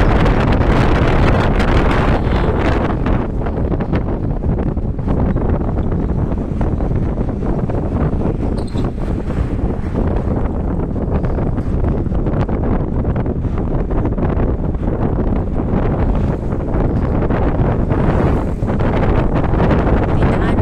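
Wind buffeting the microphone of a camera riding in a moving vehicle, a loud, steady rushing rumble with constant fluttering, over the low noise of the vehicle on the road.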